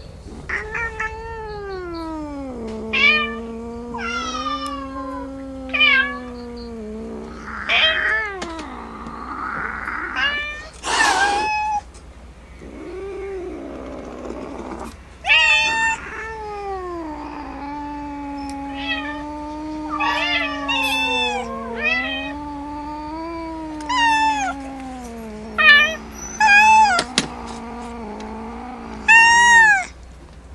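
Kittens meowing over and over in short, high-pitched calls every second or two, over a longer, lower, wavering drawn-out cat cry that holds for several seconds at a time.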